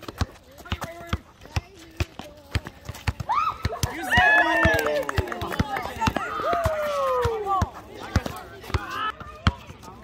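Several players shouting and calling out over one another for a few seconds in the middle, their voices sweeping up and down in pitch. Sharp taps and knocks come through all along.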